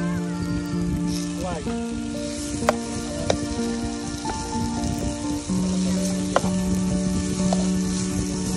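Onions, tomatoes and garlic sizzling in a nonstick frying pan on a butane camping stove as a plastic spatula stirs them, with a few sharp knocks of the spatula against the pan. Background music plays under it.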